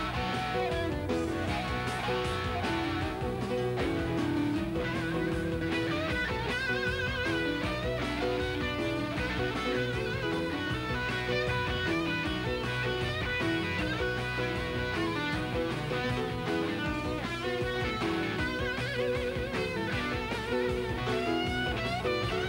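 A live rock band plays an instrumental passage led by a Les Paul–style electric guitar. The guitar holds sustained lead notes with wide vibrato and bends over the band's backing.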